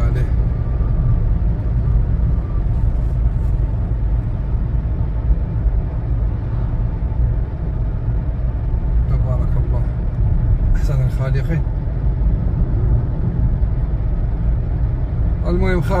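Steady low rumble of a car's engine and tyres heard from inside the cabin while driving along an open road.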